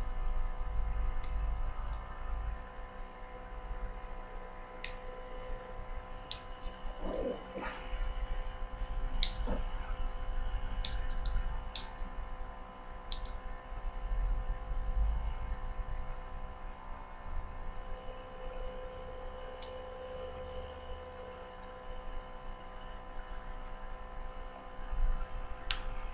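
Scattered sharp clicks of fingers and nails prying at a small plastic eyeshadow compact that won't open, over a steady electrical hum.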